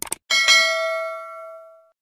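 Subscribe-button animation sound effects: two quick mouse clicks, then a notification bell dinging and ringing out, fading away over about a second and a half.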